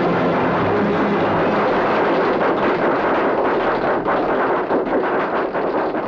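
Train running: a loud, dense rushing noise with a fast, regular rhythmic clatter that grows stronger in the second half.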